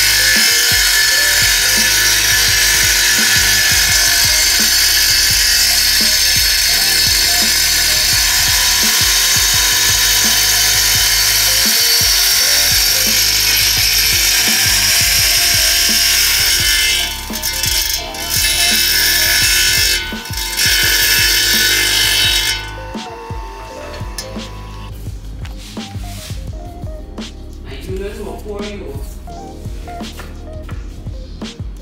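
Electric tile saw running and cutting through a sheet of mosaic tiles, loud and steady. It dips briefly twice near the end and stops about 22 seconds in.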